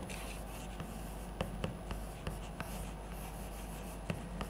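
Chalk writing on a chalkboard: a series of short, sharp taps and faint scrapes at an uneven pace as symbols are written.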